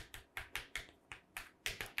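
Marker pen writing on a board: a quick, irregular series of light ticks and taps as the pen strikes and lifts through the strokes of handwritten characters.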